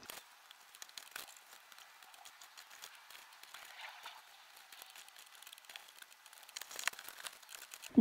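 Faint rustling and crinkling of clothes being folded and pressed into a soft suitcase by hand, with many small scattered clicks.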